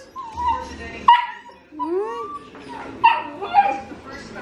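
Young puppies whining and yipping: about five short calls, each rising and falling in pitch.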